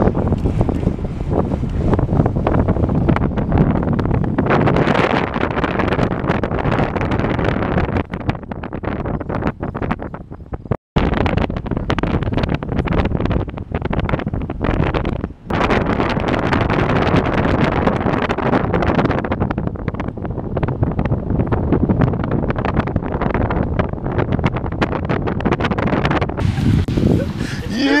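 Wind noise rushing over the microphone of a camera carried along at cycling speed, steady and loud, broken by two abrupt cuts.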